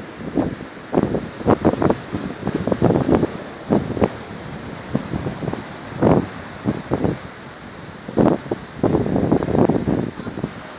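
Wind buffeting the microphone in irregular gusts over a steady wash of surf.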